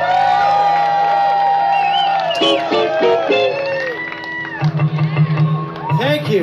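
Live string band with banjo, acoustic guitar and drums holding out notes at the close of a song, with the crowd cheering and whooping over it.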